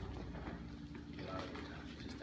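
Faint, indistinct talking from a few people in a large room, over a steady low background hum.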